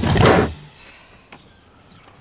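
A loud burst of sound that cuts off abruptly about half a second in, followed by quiet outdoor ambience with a few faint, high bird chirps.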